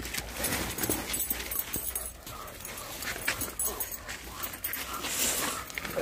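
German shepherd whimpering and yipping, with frequent crackling and knocking handling noise from a handheld phone.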